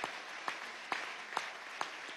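Audience applause in a hall, with single claps standing out about twice a second over the steady patter, easing off slightly.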